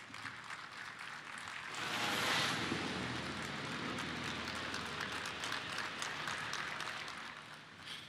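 Audience applauding. The clapping swells about two seconds in, holds steady, and fades near the end.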